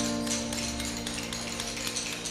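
Background music, a held chord fading out, over irregular light taps of hammers striking steel chisels into stone blocks.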